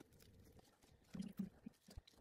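A wooden stirring stick working dabs of resin pigment on a silicone mixing cup: faint sticky clicks, with three short, soft low knocks a little past the middle.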